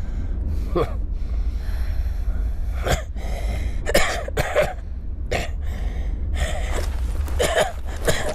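Several short gasps and heavy breaths from fighters winded after a battle, heard over a steady low rumble.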